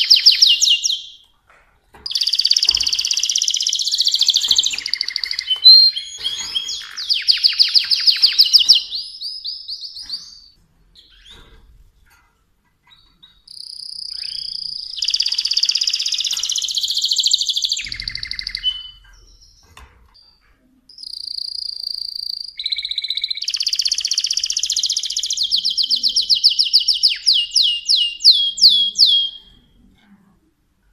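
Mosaic canary singing: long, high-pitched phrases of rolling trills and rapid repeated notes, broken by pauses of a couple of seconds. The last phrase ends in a run of repeated falling notes that slow near the end.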